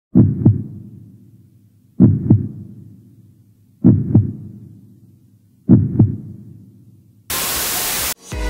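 A slow heartbeat sound effect: four double thumps about two seconds apart, each one fading out. Near the end, TV-static hiss cuts in for under a second.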